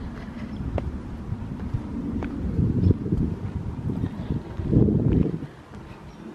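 Wind buffeting a handheld camera's microphone: an uneven low rumble that swells about five seconds in and then drops away, with a few faint clicks.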